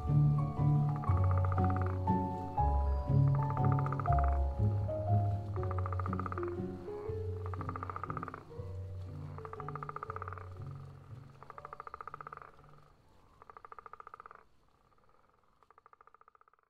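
Soft score music with a bass line, fading out over the first ten seconds or so, together with an amphibian's pulsed, purring croak repeated about every one and a half seconds, which grows fainter and dies away near the end.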